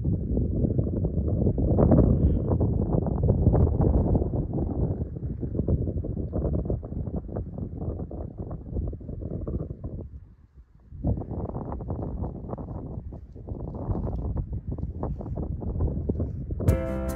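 Wind buffeting the microphone on an exposed mountain ridge: a heavy, gusty low rumble that drops away briefly about two-thirds of the way through, then picks up again.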